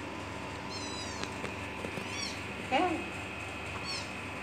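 A young kitten gives one short meow, rising then falling in pitch, near the end. Thin, high chirps sound a few times before it.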